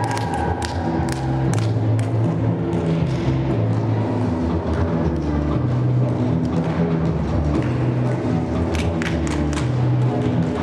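Accompaniment music for a rhythmic gymnastics hoop routine, with a stepping bass line. Sharp taps come in clusters near the start and again around nine seconds in.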